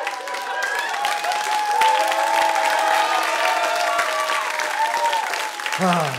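Audience applauding after a punchline, dense clapping that builds over the first second or two, with voices calling out over it.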